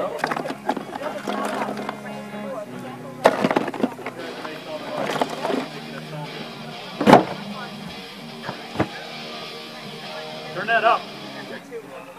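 Electric guitars and bass played loosely during a soundcheck: held low notes and scattered picking, broken by several sharp knocks and thumps, the loudest about seven seconds in. A voice comes in near the end.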